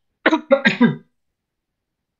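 A woman clearing her throat, three quick voiced catches in about a second, then silence.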